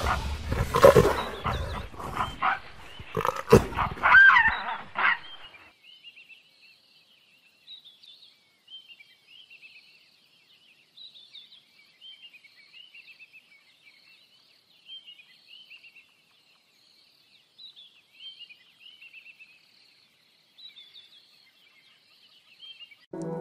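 Leopard attacking prey: snarling and scuffling with sharp knocks and a short shrill cry over the first five seconds, then the struggle stops. After that only faint, high, scattered chirping calls remain.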